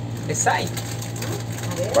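Steady low mechanical hum, with a brief spoken syllable about half a second in.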